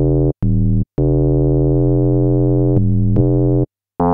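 Xfer Serum software synth playing notes on a sine oscillator whose pitch is modulated by an LFO at audio rate, giving a buzzy, FM-like tone with a really distinct pitch. Two short notes are followed by a long held note that steps to a lower pitch twice before cutting off near the end.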